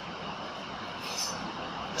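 Steady background noise with no clear tone, with one brief high scratch of a marker on a whiteboard about a second in.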